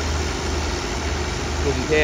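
Steady low diesel hum of an idling passenger train, with a slight even pulse and a faint background rumble.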